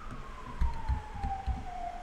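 A few soft computer keyboard key presses as the cursor is moved along a command line, under a faint single tone that slides slowly down in pitch throughout, like a distant siren winding down.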